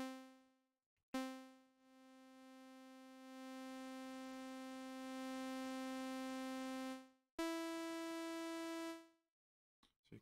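Audiorealism reDominator software synthesizer playing notes shaped by its multi-stage envelope. First comes a short note that dies away. About a second in, a note at the same pitch starts with a sharp hit, drops away, then swells back up in steps to a held sustain level before stopping. Near the end, a higher note holds and then fades out on release.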